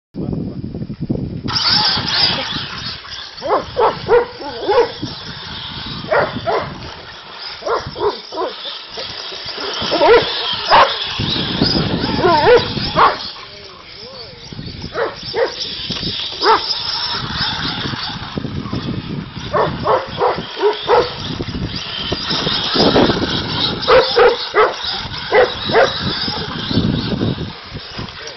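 A dog barking over and over in short, sharp barks while chasing a radio-controlled buggy, over the buggy's steady high-pitched motor noise.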